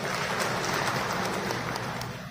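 An audience in a hall applauding, a dense patter of many hands clapping, which dies away near the end.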